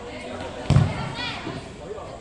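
A single loud thud of the futsal ball being struck, about two-thirds of a second in. Just after it comes a short shout from a player.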